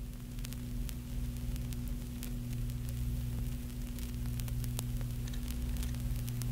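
Lo-fi crackle and static: scattered clicks and a faint hiss over a steady low electrical hum, growing slightly louder, as the intro to a lo-fi track.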